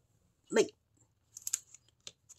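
Mostly quiet, with one short spoken word about half a second in, then a few faint light clicks near the end, the sound of oil pastel sticks and a plastic water brush being handled on a tabletop.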